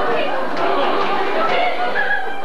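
Many voices of an operetta chorus sounding at once from the stage, a dense, unbroken mass of voices.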